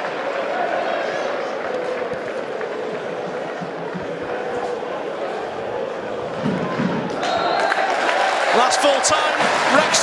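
Football stadium crowd noise, a background hubbub with scattered shouts, that swells into louder shouting and cheering about seven seconds in as the match ends.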